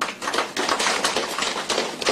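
A crowd applauding: many hands clapping at once in a dense patter.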